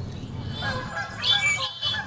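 Waterfowl honking, a run of calls starting about half a second in.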